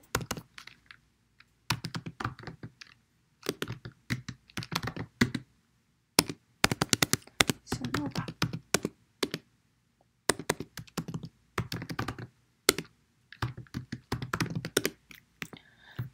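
Typing on a computer keyboard: quick runs of keystrokes separated by short pauses.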